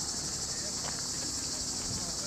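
Steady, high-pitched buzzing of a summer insect chorus, unbroken throughout.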